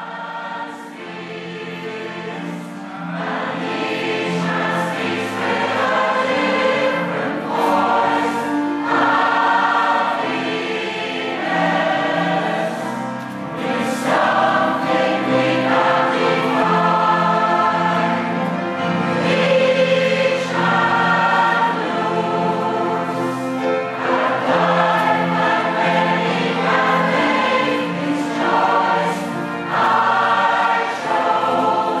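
Mixed-voice community choir singing together, fading in over the first few seconds and then holding a steady level.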